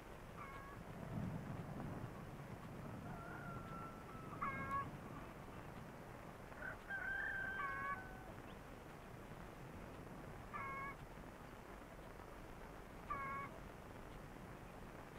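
Animal calls: five short calls a few seconds apart, with two longer steady whistle-like tones between them, over faint background noise.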